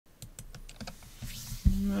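About half a dozen light clicks in the first second, then a soft hiss and a thump, after which a man starts speaking with a drawn-out 'uh' near the end.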